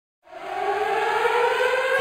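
Rising, siren-like electronic swell fading in over the first half second, its tones gliding slowly upward: the opening of the background music track.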